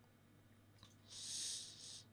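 Near silence, then a short soft hiss lasting under a second in the second half.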